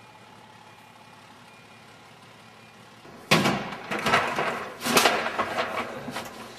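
A low steady background hum, then just over three seconds in a sudden loud clatter of knocks and rattles lasting about two seconds, from fire engine equipment and compartments being handled during a morning equipment check.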